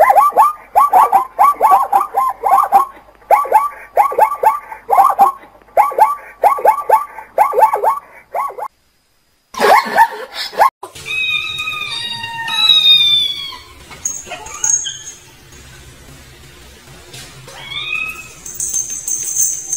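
Zebras barking: rapid series of short yelping calls in bouts of four or five, each bout about a second long and repeated over roughly nine seconds, with a louder call near ten seconds in. Fainter high-pitched falling cries follow in the second half.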